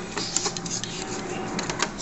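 Irregular light clicks and scrapes of a bare circuit board being handled and lined up with a Tandy Multi-Pak slot, over a steady background hiss.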